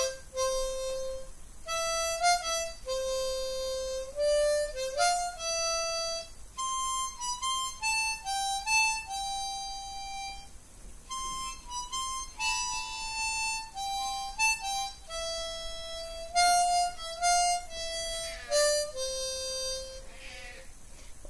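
Hohner harmonica in concert C playing a solo tune of single notes, some held and some stepping quickly. It settles on a long low note near the end.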